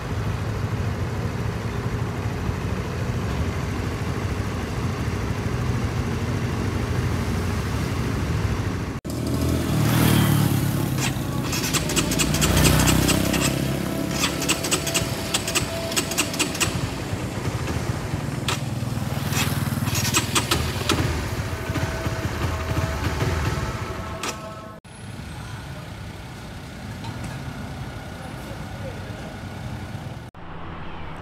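Honda RS150R's single-cylinder engine running at idle with a steady low hum. About nine seconds in it gives way to louder mixed engine and street noise with many clicks, which drops to a quieter stretch near the end.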